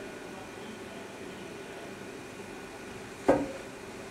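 Steady machinery hum filling the indoor curling rink, with a single sharp knock about three seconds in.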